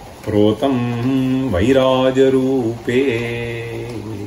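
A man's voice chanting a line of a Sanskrit verse in slow, melodic recitation, holding long steady notes; a second phrase begins about three seconds in.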